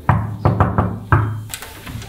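Fist knocking on a wooden hotel room door: about five knocks, a single one, then three quick ones and one more, each with a hollow low ring from the door.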